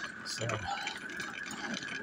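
A man's voice says one short word, 'so'. Under it runs a faint light rattling and a steady faint high hum.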